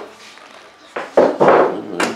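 Handling noise from rummaging through a bundle of loose used wires: a light knock about a second in, then a short rustle.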